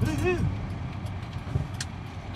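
Inside a moving car: steady low engine and road noise in the cabin, with a brief voice sound right at the start.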